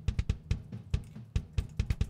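Sampled acoustic drum kit in Superior Drummer 2 playing a programmed groove of tom hits with kick drum underneath, a quick run of sharp hits about five a second.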